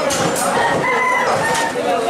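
Cleaver chopping goat meat on a wooden butcher's block, with a long, steady high-pitched call from about half a second in, lasting about a second, over market chatter.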